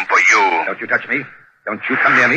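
Speech only: a voice in radio-drama dialogue, with a short pause a little past halfway.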